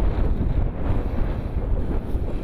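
Wind buffeting an outdoor microphone: a steady, heavy low rush of wind noise with no clear pitch.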